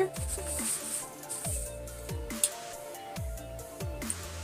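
Background electronic music: deep kick drum beats under held synth notes.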